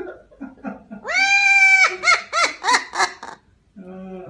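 Amazon parrot mimicking human laughter: a long, loud drawn-out cry, then a quick run of about five short 'ha' notes.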